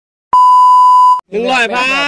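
A loud, steady electronic beep at a single pitch, lasting about a second and cutting off abruptly, edited in as a sound effect; a man's voice calls out right after it.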